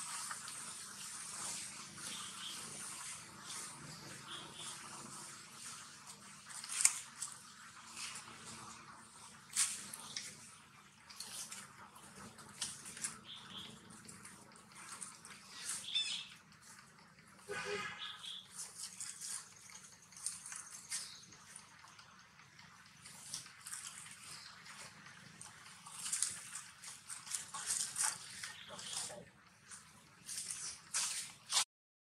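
Dry leaf litter crackling and rustling in scattered clicks as long-tailed macaques shift and handle each other on the ground, with one short rising call from a monkey about halfway through.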